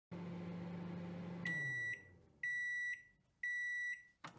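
Microwave oven running with a steady low hum that winds down in pitch as it stops. Three high beeps follow, each about half a second long and about a second apart, signalling that the cooking time is up.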